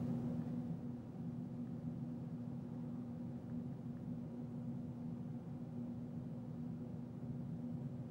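Faint steady low hum of room tone, with a held tone and no distinct events.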